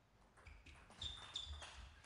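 Faint table-tennis rally: a handful of light ball strikes with two short, high squeaks about a second in.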